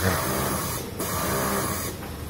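Juki industrial sewing machine stitching binding tape onto fabric, its motor running in two runs of about a second each with a brief stop in between.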